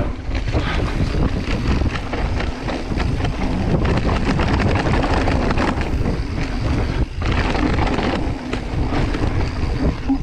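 Wind buffeting the microphone and knobby tyres rolling over dry dirt as a mountain bike descends a trail at speed, with frequent rattles and knocks from the bike over bumps.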